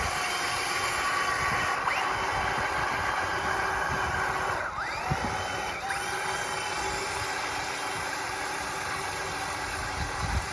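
The small electric drive motors of a Spin Master All-Terrain Batmobile RC truck whine steadily as its wheels churn and splash through shallow pond water. The whine rises in pitch as the motors speed up, about two seconds in and again around five and six seconds in.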